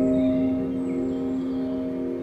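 Meditation music: a single sustained ringing tone, struck just before and slowly fading, with faint high wavering tones above it.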